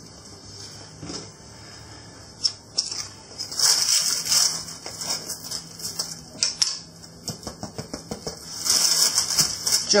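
Baking parchment crinkling and rustling, with scattered small clicks and knocks, as a freshly baked sourdough loaf is tipped up with a wooden spatula in its clay baking dish. The loudest rustles come about four seconds in and again near the end.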